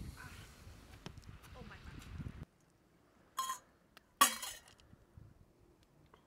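A spoon clinks lightly a few times against a small metal cooking pot, over a low outdoor noise bed. After a sudden cut to near silence, there are two short, loud voice bursts, the louder one about four seconds in.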